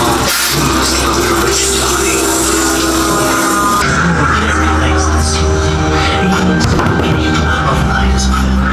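Music with a deep steady bass and long held notes; the bass grows stronger about halfway through.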